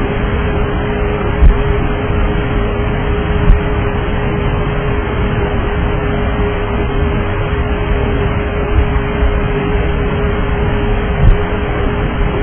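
Cabin-microphone track of a DC-9's cockpit voice recorder: a loud, steady rush of aircraft noise with a constant hum running through it. Two brief clicks come in the first few seconds and another near the end.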